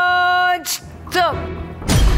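A woman's long, held 'Aaa' of surprise, then a short vocal sound and a sudden thud near the end, over suspense music.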